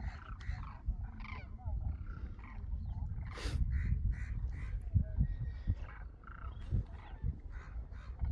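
A large flock of demoiselle cranes calling, many short calls overlapping, several a second, with a low rumble underneath.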